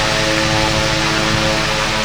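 A 1940s A.C. Gilbert Polar Cub 12-inch electric desk fan running at speed: a steady rush of air from its blades over a steady electrical buzz with a humming tone. The buzz, still there a little after oiling, is put down by the owner to frayed wiring and worn solder connections.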